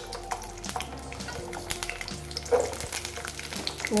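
Garlic cloves frying in hot sesame oil in a kadai, sizzling with many scattered small crackles and pops.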